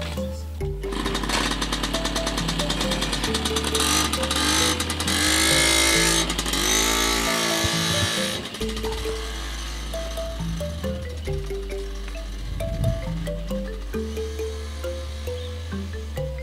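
Background music with a stepped bass line and short melody notes. Over the first half a small motorcycle engine revs and pulls away, its pitch rising and falling, loudest about five to seven seconds in, then dropping off.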